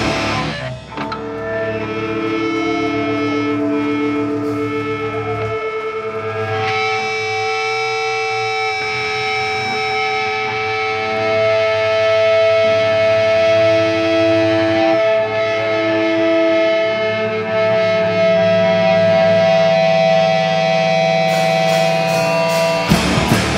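Live heavy rock: distorted electric guitars and bass hold long, ringing, effect-laden notes with no drums, one note wavering in a fast tremolo in the first few seconds. Near the end the drums come back in.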